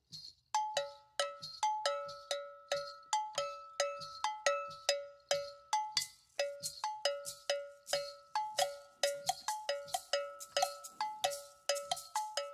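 Hand-held cowbell-type metal bell struck with a wooden stick, starting about half a second in. It plays a steady repeating rhythm pattern on a low and a higher ringing tone, the bell part that sets the time for a Yoruba chant.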